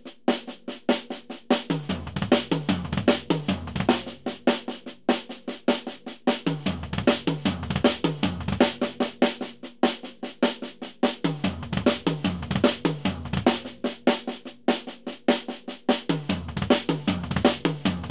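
Drum kit played in a two-bar exercise: a bar of steady snare drum triplets, then a bar where quick groups of three double-pedal bass drum strokes fall between the snare notes. The two-bar cycle repeats about four times, roughly every five seconds.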